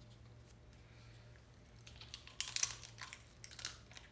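Crisp wonton-wrapper sausage cups crunching and crackling as they are bitten into, a cluster of sharp crackles in the second half, over a faint steady hum.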